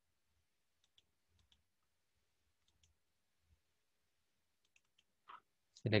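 A few faint computer mouse clicks, some in quick pairs, spread over several seconds while a file is picked in a file dialog; a man's voice starts near the end.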